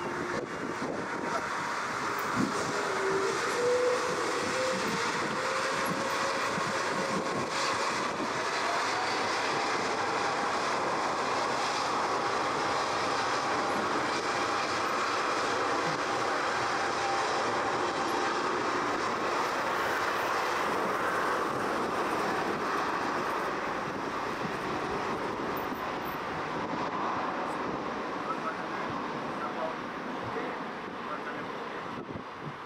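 Airbus A350-900's Rolls-Royce Trent XWB turbofan engines spooling up to takeoff power: a whine that rises in pitch over the first several seconds, over a steady jet engine noise that holds as the airliner starts its takeoff roll.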